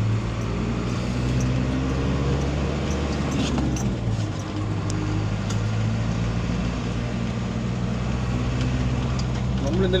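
Steady low engine drone and road noise inside a moving vehicle's cabin, with faint voices talking in the background.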